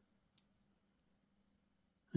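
Near silence, with a single faint click about a third of a second in, from tiny nail-art charms being picked over in a palm.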